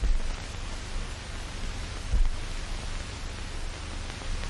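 Steady hiss and low rumble of an old film soundtrack, with two brief low thumps, one near the start and one about two seconds in.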